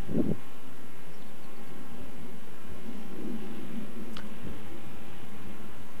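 Low, uneven wind rumble on the microphone, with a faint click about four seconds in.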